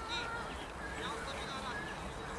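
Young footballers' voices shouting and calling across the pitch, distant and indistinct, in several short wavering calls.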